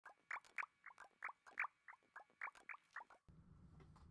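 A quick run of short, high chirps, each dropping in pitch, about four a second, stopping a little after three seconds in; then a low steady hum sets in.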